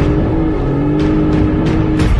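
A boat's outboard motor running at speed, a steady drone that starts abruptly and dips slightly in pitch, over background music. A few sharp ticks come around the middle.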